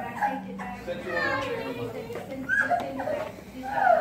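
Indistinct voices in a lobby: brief fragments of talk with no clear words, quieter than the nearby conversation.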